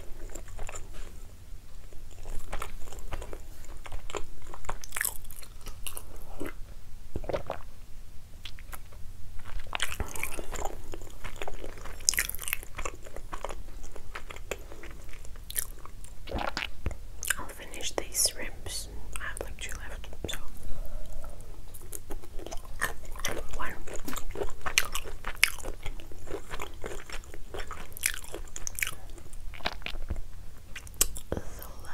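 Close-miked chewing and biting of ravioli and shrimp, with many irregular wet mouth clicks and smacks.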